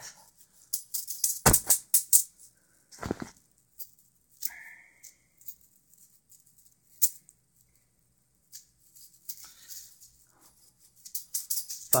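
Chainmail juggling balls of woven metal rings jingling and rattling as they are handled and caught, in short sharp bursts. The rattles come thick in the first few seconds, thin out to the odd click in the middle, and come close together again near the end as juggling restarts.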